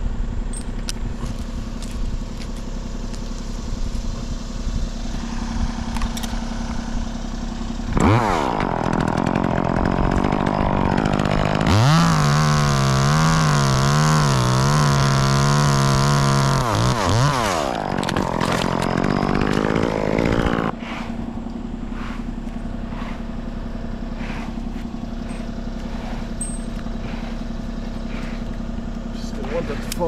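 Top-handle chainsaw idling, then revved up about eight seconds in and run at full throttle through a maple trunk, its pitch wavering under the load of the cut. The revs drop near the end of the cut, surge once more, and fall back to idle after about thirteen seconds.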